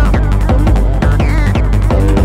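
Hardtek / free tekno dance music from a DJ mix: a fast, steady, pounding kick drum with short synth squelches that fall in pitch repeating over it.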